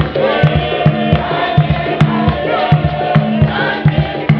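A choir of mixed voices singing a Spiritual Baptist hymn over a steady low beat of about three strokes a second.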